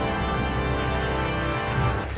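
TV game-show theme music ending on one long held chord, which stops just before the presenter comes in.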